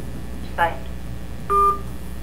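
A short electronic two-tone beep from a telephone, lasting about a third of a second, as the call is ended.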